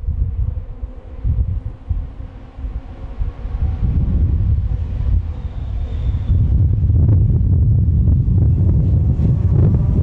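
Wind buffeting the microphone over the engines of Caterham Seven 420R race cars running past on track. The sound grows louder and steadier about six seconds in.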